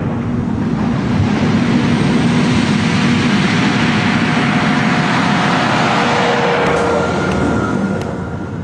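Loud, steady roar of heavy engine-driven machinery, building up at first and easing off near the end.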